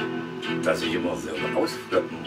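Electric guitar played, with a man singing over it.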